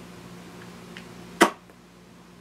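A single short, sharp puff of breath about one and a half seconds in: a stifled giggle bursting out through pressed lips. It sits over a faint steady room hum.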